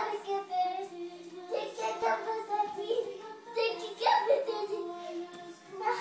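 Music playing from a television, with a toddler's high voice vocalising over it in short repeated bursts.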